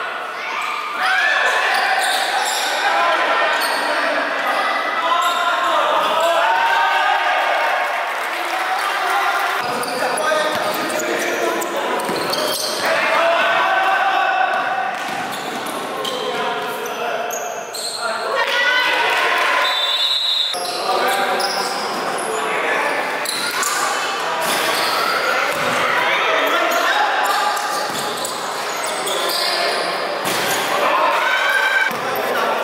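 Live sound of an indoor basketball game: players' voices and shouts over a basketball bouncing on the court. A brief referee's whistle sounds about two-thirds of the way through.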